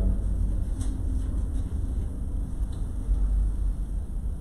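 Steady low rumble of background room noise with no speech, and a faint click about a second in.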